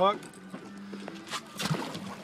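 Water splashing near the end as a hooked blue shark thrashes at the surface beside the boat, over a steady low hum from the boat's idling engine.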